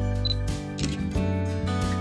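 Soft acoustic guitar background music, with a single camera shutter click a little under a second in.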